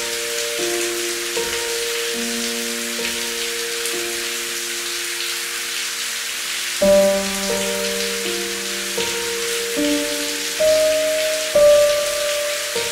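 Steady rain falling on a hard surface, an even hiss of drops, with slow instrumental music playing long held notes over it; the music swells louder about seven seconds in and again near the end.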